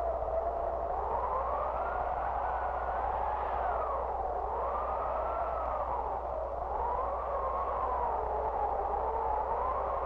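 Howling wind on a film soundtrack: a whistling moan that rises and falls in pitch in slow swells, a couple of seconds apart.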